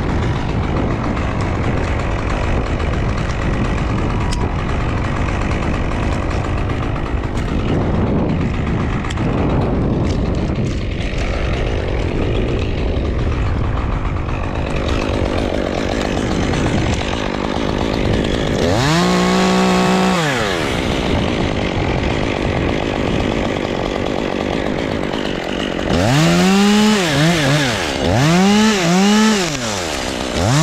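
Stihl chainsaw running, throttled up once for about two seconds past the middle and then revved in three quick bursts near the end, each rising and falling in pitch.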